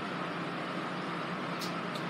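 Steady room hum and hiss with no speech, and one faint short click near the end.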